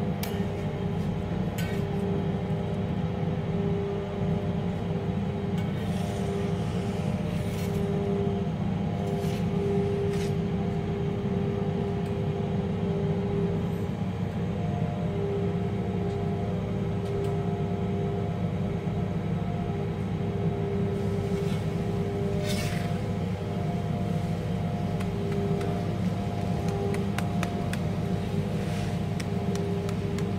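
Steady low mechanical hum and rumble, with faint higher tones that come and go and a few light clicks.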